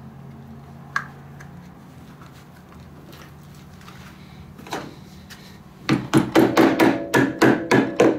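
Rubber mallet tapping a cap onto a snowmobile's rear idler wheel to seat it: a single knock midway, then a quick run of taps, about five a second, in the last two seconds.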